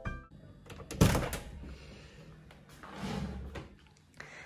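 A wooden door's lever handle pressed and the door opened, with a sharp thunk about a second in, then a softer rustling stretch around three seconds.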